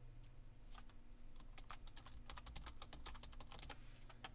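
Faint typing on a computer keyboard: a quick, uneven run of key clicks.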